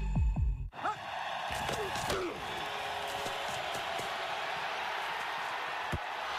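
A low tone with falling notes closes an ad, then about a second in a big stadium crowd's noise sets in and runs steadily, with a few shouts rising out of it.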